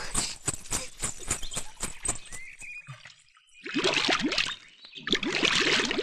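Quick, rhythmic footsteps through dry leaves with the jingle of anklet bells on each step, stopping about two and a half seconds in. After a brief near silence come two louder bursts, the first with a voice-like pitched tone.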